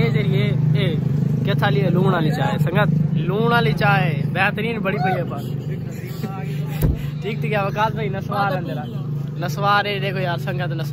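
Young men talking and laughing over a steady low hum, with a single sharp knock about seven seconds in.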